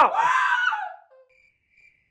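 A shouted voice trails off, then crickets chirp faintly three times in the silence: the stock comedy 'crickets' effect marking an awkward pause.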